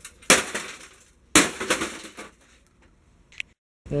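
Two heavy blows on an Apple Power Macintosh G3 tower's case, about a second apart, each a sharp crash that rings briefly.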